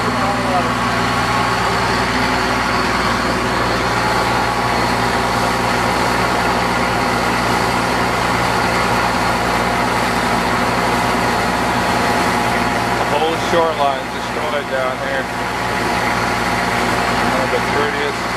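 A fishing boat's engine running steadily under way, with wind and water noise. A voice is heard briefly about 13 seconds in.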